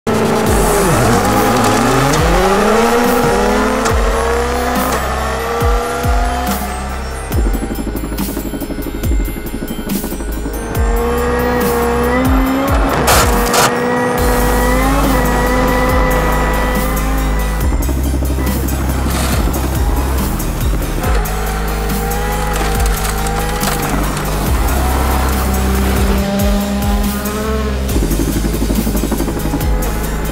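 Ford Fiesta WRC rally car's turbocharged 1.6-litre four-cylinder engine revving hard and pulling away, its pitch climbing steeply in the first few seconds, then running on at high revs. Background music with a steady beat plays under it.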